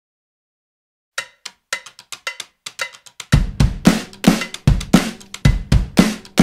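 Opening of a recorded pop-rock song, drums only: after about a second of silence, light ringing percussion hits tap out a sparse pattern, then a little over three seconds in a full drum kit with a heavy bass drum comes in, playing a steady beat.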